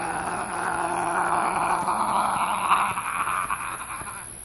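Steady outdoor field ambience: an even, hissing buzz with a thin, high, steady whine above it, typical of a summer insect chorus.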